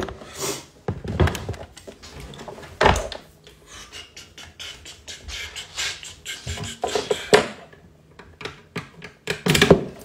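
Scattered thunks, knocks and clicks of cables being plugged into studio monitors and equipment being handled, with sharper knocks about a second in, about three seconds in and near the end.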